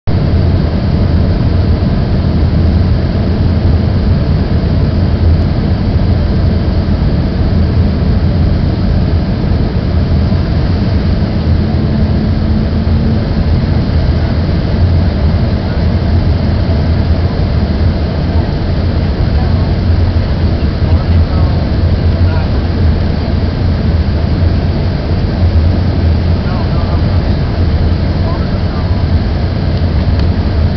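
Steady cabin noise of an Embraer ERJ-145 regional jet descending on approach: a loud, even rumble from its rear-mounted Rolls-Royce AE 3007 turbofans and the airflow past the fuselage, heaviest in the low end.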